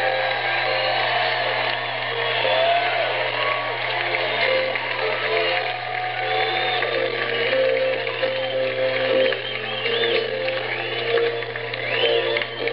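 Live rock band music played loud in a large venue and recorded from within the audience, with held notes running throughout. Audience members whoop and cheer over it.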